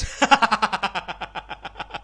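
A man laughing hard in a long run of quick 'ha-ha' pulses that gradually slow and fade.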